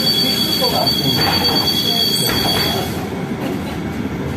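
City bus cabin noise while the bus moves slowly: a steady rumble with a high, steady two-tone whine that stops about three seconds in.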